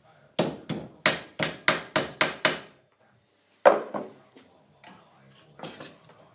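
Hammer striking a thin metal piece clamped in a steel bench vise: eight quick blows in about two seconds, each with a short metallic ring, then a pause and one harder, loudest blow, followed by a couple of lighter knocks.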